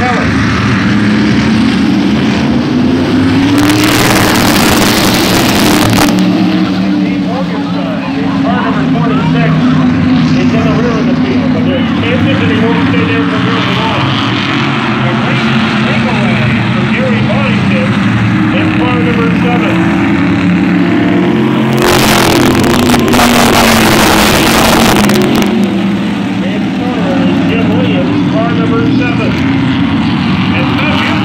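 A field of modified race cars running laps on a short oval, their engines droning steadily, with the pack passing close by loudly twice: about four seconds in and again about twenty-two seconds in.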